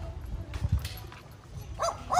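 A dog barking: two short yips close together near the end.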